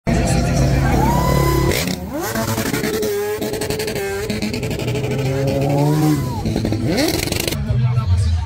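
Racing motorcycle engines revving hard. The pitch climbs steeply, holds, then falls off again, twice over.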